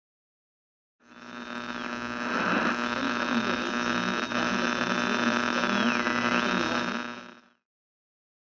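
A buzzing electrical hum with static that fades in about a second in and stops shortly before the end, with a thin high whine that drops in pitch and comes back up near the end.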